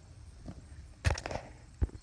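Phone handling noise as the camera is swung down: a short burst of rustling clicks about a second in and a single click near the end, over a low rumble.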